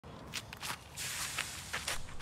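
Footsteps of a disc golfer's run-up across a concrete tee pad: about half a dozen quick, uneven steps and scuffs as he strides into his throw.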